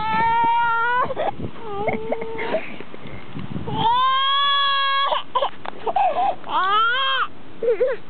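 Infant crying: long, held wails, the first right at the start and another about four seconds in, a shorter wail near the end that rises and falls in pitch, and sobbing catches of breath between them.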